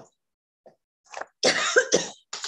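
A person coughing. After a few faint small sounds, a loud cough comes about a second and a half in.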